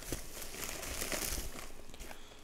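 Plastic bubble mailer crinkling as hands rummage inside it and draw out a small boxed puzzle.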